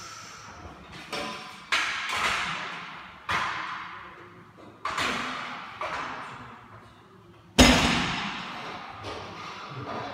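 Loaded barbell plates striking the gym floor during a set of heavy deadlifts: a series of sharp thuds, each with a metallic ringing tail. The hardest and loudest comes about three-quarters of the way through.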